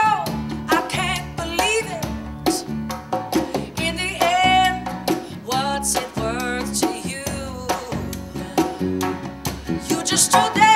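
Live acoustic band playing: a woman singing a wavering, vibrato-laden melody over a strummed acoustic guitar, with a djembe and a snare drum keeping a steady beat.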